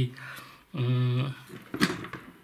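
A man's drawn-out hesitation 'eh', then a single short knock near the end as a loose AR-15 rifle barrel is taken up from the table.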